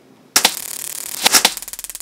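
Video-editing transition sound effect: a sudden loud burst of hissing noise with a few sharp cracks about a second in, then a fast, even rattling buzz.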